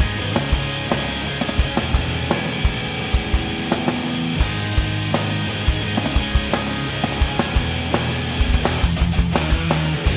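Progressive metal band playing an instrumental passage: sustained low guitar and bass chords under frequent, uneven drum hits.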